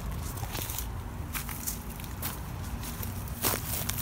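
Footsteps crunching on dry leaf litter and gravel at an uneven pace, with a louder crunch near the end.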